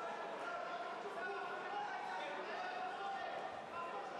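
Overlapping voices in a large, echoing sports hall, with a few dull thuds among them.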